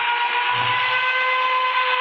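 CNC metal spinning machine's forming roller pressing against a spinning metal workpiece, giving a steady high-pitched squeal of several held tones over a hiss. A low hum swells and fades about every second and a half.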